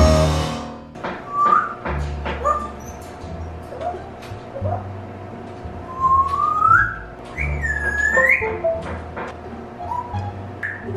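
An African grey parrot whistling: short rising chirps, then a long rising whistle about six seconds in and a swooping whistle that dips and climbs about two seconds later. It opens on the last chord of a music track, which stops abruptly.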